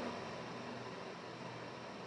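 Faint steady hiss of room tone, with no other sound.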